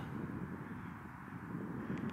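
Faint, steady low rumble of distant engine noise.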